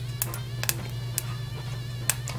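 Carom (ajwain) seeds dry-roasting in a steel pan, giving a few scattered crackles and pops. The crackling is the sign the seeds are roasted enough. A steady low hum runs underneath.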